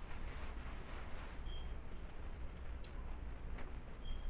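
Close-up eating sounds: a person chewing a mouthful of seafood, with a brief squeak about a second and a half in and two sharp clicks near the end, over a steady low hum.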